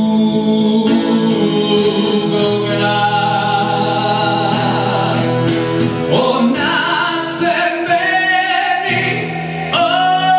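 A male voice singing long held notes, accompanied by a strummed steel-string acoustic guitar.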